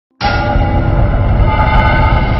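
Cinematic intro sting for a channel logo: a loud, held chord of several tones over a deep rumble, starting suddenly just after the start.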